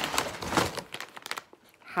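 Crinkling and rustling of plastic and paper food packaging as ingredient packets are handled and pulled from a meal-kit bag, a run of irregular rustles that stops after about a second and a half.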